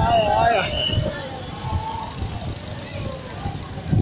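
Road traffic noise heard from a moving car: a steady low engine and road rumble. A voice calls out briefly in the first second.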